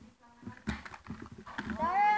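Children's scissors snipping at a cardboard toy box, a few sharp clicks, then a voice sliding up in pitch near the end.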